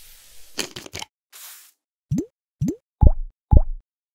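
Drops of liquid plopping from a dropper bottle, a cartoon sound effect: four short rising bloops about half a second apart, the last two loudest. Before them comes about a second of hissing with a few clicks.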